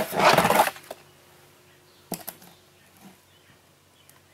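A particleboard speaker template being flipped over and rubbed against a plastic door panel: a loud scraping rustle for the first moment, then a single light knock about two seconds in.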